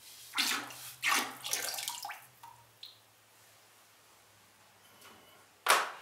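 Liquid glaze pouring and splashing out of an unfired clay tankard into a bucket of glaze, two short splashy pours in the first two seconds, as the inside of the raw pot is glazed. A short sharp noise near the end.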